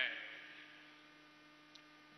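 Reverberation of the last spoken word fading out through the public-address system over about half a second, leaving a steady low electrical hum with faint hiss; a faint tick near the end.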